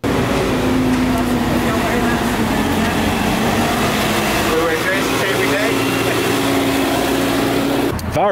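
Loud, steady city street noise: a dense rushing hiss with a low, engine-like hum under it.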